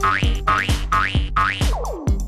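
Comic background music with a thumping beat about twice a second and a rising cartoon 'boing' sound effect after each beat, three times, then a falling slide whistle-like glide near the end.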